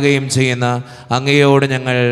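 A man's voice chanting a slow Malayalam prayer with long held notes, in two phrases with a brief breath about a second in.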